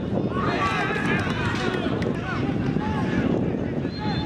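Players' raised voices calling and shouting across a football pitch, over a steady rumble of wind on the microphone.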